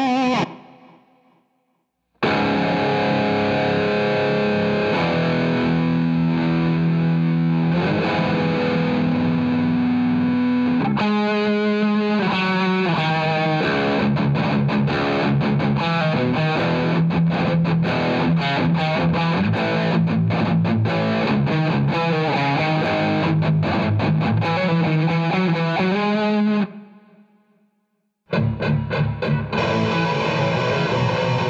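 Distorted B.C. Rich electric guitar, tuned to drop C-sharp, playing a metalcore verse harmony riff at slow tempo. After a short silence it begins with held notes, changes to faster picked notes about eleven seconds in, and stops about 27 seconds in. Near the end two guitars start a new riff together.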